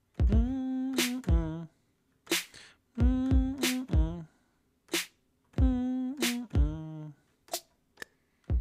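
Drum-machine kick and snare hits tapped out on a MIDI keyboard in a repeating hip-hop pattern. The phrase comes three times, and each opens with deep kicks under a sustained pitched tone lasting about a second.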